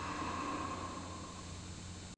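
Steady hiss with a low electrical hum from a video soundtrack, and a faint held high tone during the first second or so.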